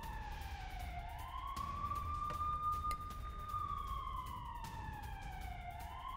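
A siren wailing in slow cycles: its pitch climbs quickly, holds, then sinks slowly over a few seconds and climbs again near the end, over a low steady rumble.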